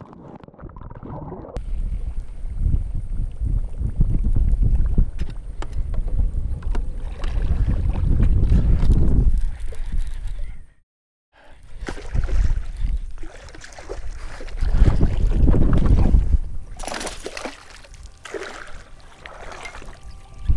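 Wind buffeting the microphone in gusts, over water lapping against a bass boat's hull, with a short dropout just before the middle. Near the end comes a brief splashing as a hooked bass thrashes at the surface.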